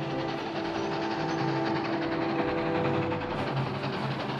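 Steam locomotive hauling a freight train past, with a steady running rumble and a rapid clatter of wheels. Several steady tones are held together over it from about half a second in until about three seconds in.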